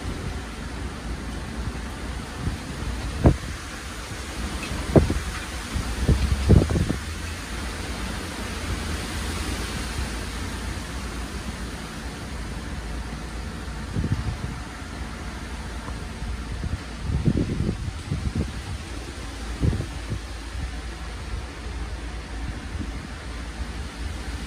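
Steady hiss of heavy rain and gusting wind from a 40–50 mph microburst, with wind buffeting the microphone in low rumbling gusts several times, the strongest about 3, 5 and 6–7 seconds in and again around 17–18 seconds.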